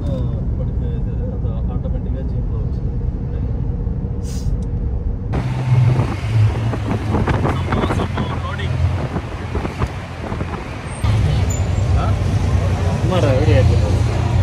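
A road vehicle running while driving, with steady engine and road rumble. About five seconds in it cuts to a louder ride in a tuk-tuk, whose engine runs with a low throb and rattles, and passengers' voices come in near the end.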